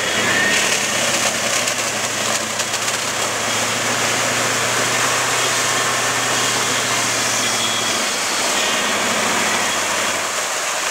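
Chevrolet 4x4 truck's engine running steadily as the truck drives slowly along a muddy trail, a steady low hum under a noisy wash of sound; the hum shifts slightly about eight seconds in.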